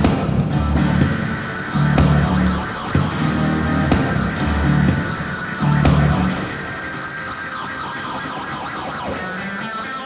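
Guitar music built on a repeating bass figure, with guitar parts layered above it. About six seconds in the bass figure drops out and the music thins and quietens for the rest of the stretch.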